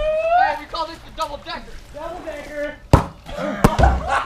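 Voices calling out, followed by two or three sharp knocks close together near the end.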